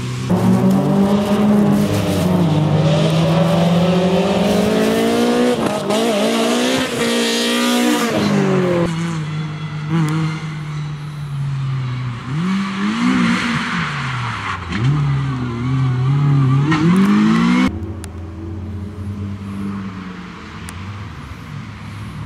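Small rally cars driven hard past on a wet circuit, one after another, their engines revving up and dropping back with each gear change. The sound cuts sharply twice as one car gives way to the next, and the last car is quieter and further off.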